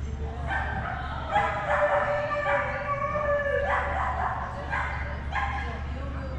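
A dog barking and yipping in a series of high-pitched calls, one of them drawn out for about a second in the middle.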